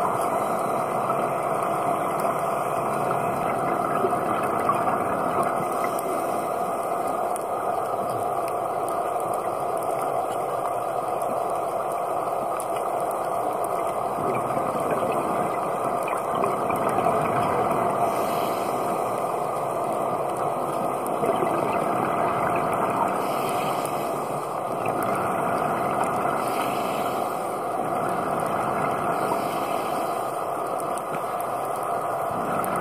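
Steady underwater noise as picked up by a camera on a scuba dive: a continuous low drone with no sudden events.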